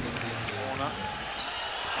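Live basketball game sound in an arena: a steady background of crowd noise with sounds of play on the court, and no single loud event.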